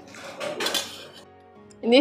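A metal spoon scraping and clinking against a stainless steel bowl, scooping up the last of the food, loudest about half a second in, over soft background music.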